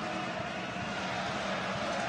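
Steady ambient noise of an ice hockey arena during play: a continuous even hum from the crowd and rink, with no single event standing out.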